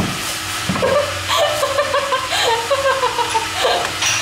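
A young man laughing in short broken bursts, the nervous laugh of someone just startled by a horror jump scare, over a steady low background hum.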